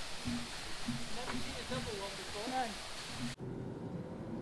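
Steady rush of running water at a watermill, with faint voices. About three and a half seconds in, it cuts off suddenly to the low hum of a car heard from inside the cabin.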